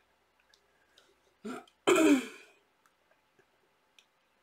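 A woman clearing her throat: a short sound, then a louder, rougher one about two seconds in.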